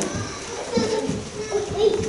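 Young children's voices chattering and calling out in a church hall. A steady tone starts about halfway through.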